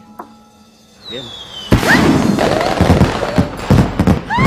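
Fireworks going off: after a quiet start, a sudden loud burst a little under two seconds in, followed by rapid crackling and popping with short whistling glides.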